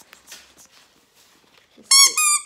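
A baby crying: one loud, high-pitched wail near the end, about half a second long with a brief catch in the middle.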